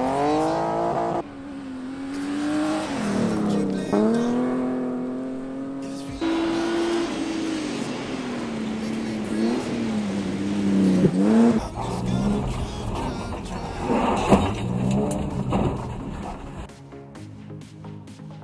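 BMW E30 rally car's engine revving hard on gravel, its pitch climbing and dropping back again and again as it shifts up through the gears, in several spliced clips. Near the end it falls away to a quieter sound.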